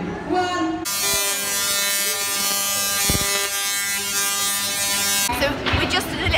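Artificial lightning from a high-voltage electrical discharge: a loud, harsh, steady electric buzz that starts about a second in, holds for about four and a half seconds, and cuts off suddenly.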